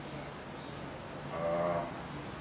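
A man's drawn-out hesitation sound, one flat 'eee' held for about half a second past the middle, over faint room tone with a low steady hum.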